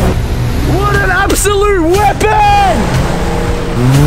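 Nissan GQ Patrol 4x4 engine running under load off-road, a steady low rumble, with a person's voice calling out over it in the middle. Near the end the engine revs up, its pitch rising.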